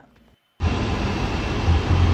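Car cabin noise: a steady, loud rumble of road and engine noise that cuts in abruptly about half a second in, after a brief silence.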